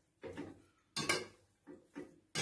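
A spoon stirring vegetables in a metal sauté pan, with a few short scrapes and clinks against the pan separated by brief pauses.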